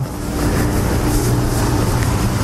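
A running motor: a steady low hum with an even hiss over it.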